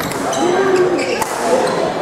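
A badminton rally: a few sharp racket strikes on the shuttlecock, each a short crisp knock, amid talking voices.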